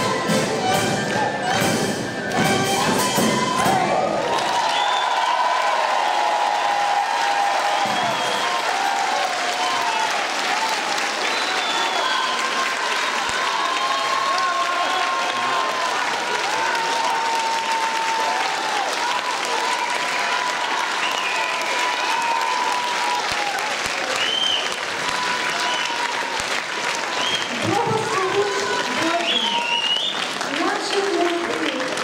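Folk ensemble music with drums ends about four seconds in, followed by long, steady applause from the audience, with voices mixed in.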